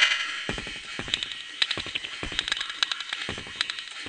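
Beatboxer's vocal percussion recorded inside an MRI scanner: a few low kick-drum thumps with many quick clicks and hi-hat-like ticks between them, over a faint steady residual scanner noise.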